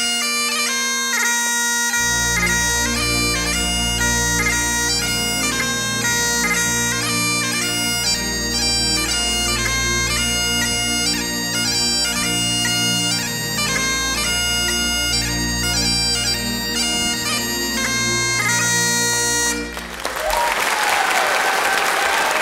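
Highland bagpipe playing a lively dance tune over its steady drones, with low bass accompaniment joining about two seconds in. The pipes stop a couple of seconds before the end and the audience breaks into applause.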